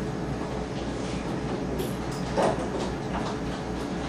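Steady low mechanical hum with a pulsing rumble underneath and a steady tone, and a brief clatter about two and a half seconds in.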